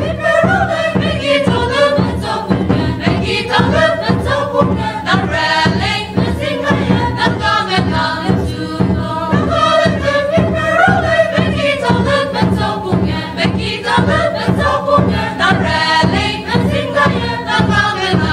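A mixed choir of men and women singing together in chorus, with a regular beat underneath.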